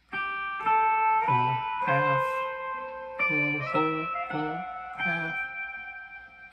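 Electric guitar picking about eight single notes, one every half second or so, each left ringing: the G major scale played along one string.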